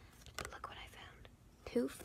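A girl whispering quietly, with one faint click about halfway through and her voice coming back in near the end.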